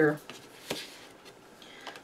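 The tail of a spoken word, then a quiet stretch of desk handling: a single soft click a little under a second in and a faint tick near the end, as a hand reaches for craft supplies on the table.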